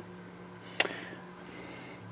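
A steady low hum with one sharp click a little under a second in.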